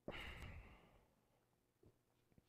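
A person's breathy exhale, like a sigh, starting suddenly and fading away over about a second.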